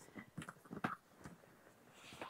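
Faint rustling and a few light ticks as a soft-sided suitcase's lid is opened and the clothes inside are handled, mostly in the first second or so.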